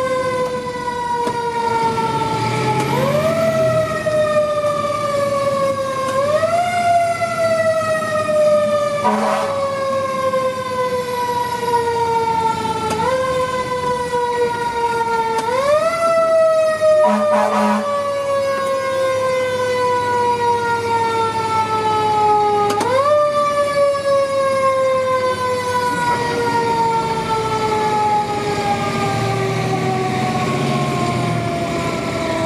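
Federal Q2B electromechanical siren on a 2022 Seagrave Marauder fire engine, heard from inside the cab. It is wound up five times in quick rises, each followed by a long, slow wind-down in pitch. Two short horn blasts cut in, about nine seconds in and again around seventeen seconds.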